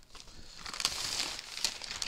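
Paper and aluminium foil food wrapping crinkling and rustling as hands pull it open, with short crackles throughout, busiest through the middle.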